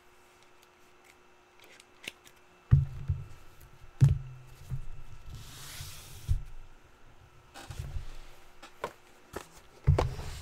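Sealed trading-card boxes and cards being handled on a tabletop: two sharp thumps about three and four seconds in, a brief rustling scrape around the middle, then light clicks and more knocks near the end.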